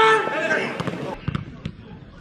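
A loud shouted call from a voice at a football pitch, then a quieter stretch of open-air pitch ambience with a few sharp knocks.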